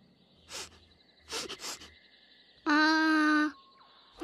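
Cartoon baby tyrannosaur voice sniffing the air to follow a scent: one sniff, then a quick run of three or four sniffs, followed by a short, steady-pitched hum that is the loudest sound.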